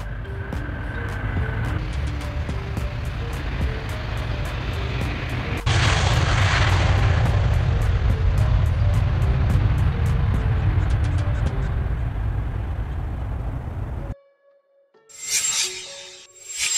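Background music with a steady beat over the noise of a Boeing 777-9X's twin GE9X turbofans as the jet rolls out on the runway after landing. The jet noise becomes much louder and rushier about six seconds in, then cuts off abruptly about two seconds before the end, where a chime sounds.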